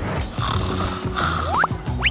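Background music with a hissing noise that swells twice, then a short rising squeak near the end.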